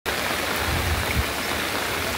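Steady hiss of heavy rain and rushing floodwater, with a low rumble about a second in.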